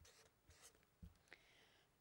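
Faint marker-pen strokes on paper: a few short, soft scratches as the last letters of a line are written.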